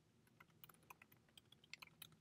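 Faint computer keyboard typing: about a dozen soft, quick keystrokes.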